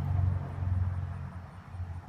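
A steady low hum, dipping briefly about one and a half seconds in.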